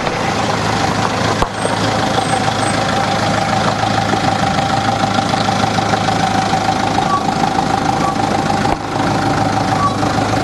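A vehicle engine idling: a steady, even hum with a constant mid-pitched tone running through it.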